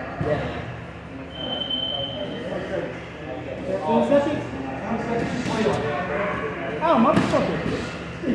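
Bodies thudding on gym mats as two people grapple and scramble, with people talking in the background; one sharper thud comes near the end.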